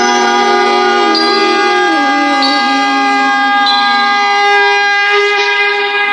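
Harmonium playing long held chords, with a slow melody line stepping between notes underneath, as an interlude in devotional music.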